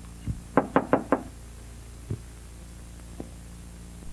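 Knocking on a door: four quick raps, about five a second, half a second in, with a single soft thump before them and another about two seconds in, over a steady low hum.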